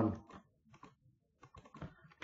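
Computer keyboard keys being pressed in a few short, scattered clicks as text is typed, most of them near the end.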